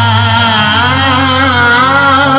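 A man's voice singing a devotional manqabat through a loud PA system, holding a long, wavering note over a steady low hum.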